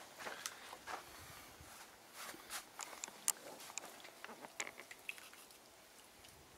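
Faint, scattered small clicks and light taps, several a second at times, from handling work at the brickwork.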